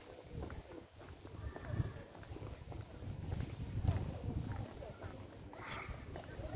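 Street ambience while walking: low, irregular thuds of footsteps and phone handling, with faint voices of people nearby.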